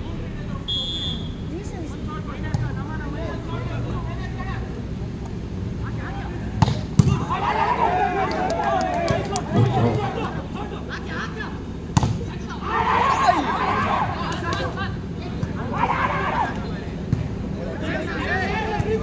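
Volleyball rally: sharp slaps of hands striking the ball, a quick pair about a third of the way in and another about two-thirds through, with voices shouting and calling out after the hits.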